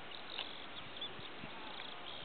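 Faint outdoor background: a steady low hiss with a few soft, high, short chirps.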